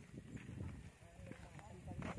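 Faint, distant talking over a steady low rumble.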